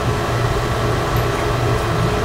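Steady low hum of room background noise, with a faint hiss above it.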